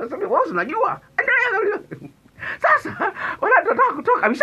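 A man speaking animatedly into a close studio microphone, his voice pushed up high and strained in stretches between short pauses.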